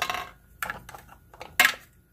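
Nesting Santa figures being pulled apart and handled: a string of short, sharp clicks and clinks of small hard pieces, the loudest knock near the end.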